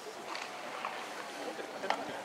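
Ballpark crowd background: spectators chatting indistinctly in the stands over a steady hum of the stadium, with one short sharp click near the end.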